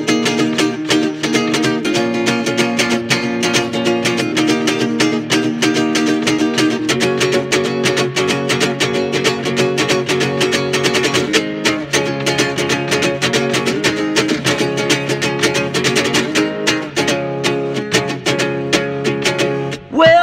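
Instrumental break in a song demo: a strummed acoustic string instrument plays chords in a steady rhythm, with no vocals. The chord pattern shifts about seven seconds in.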